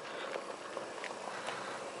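Quiet outdoor background noise, a steady faint hiss with a few faint light ticks.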